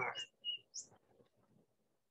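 A few short, high bird chirps in the first second, faint behind the end of a spoken word.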